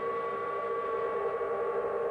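Several sirens sounding together as one long, steady chord of held tones, a national mourning signal.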